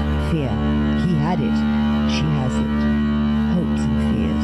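Film soundtrack music: a steady low drone held under a higher pitched line that glides and swoops up and down.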